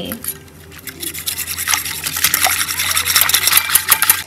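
Wire whisk beating soya milk powder mixture in a stainless steel bowl: fast, continuous wet swishing with the wires clicking against the metal, building up from about a second in.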